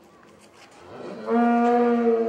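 A Holstein cow mooing: one long moo that rises in pitch about a second in and is then held loud and level.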